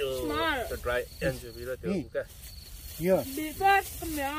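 Crickets chirping in the background under people's voices, which come in short bursts of talk and exclamation.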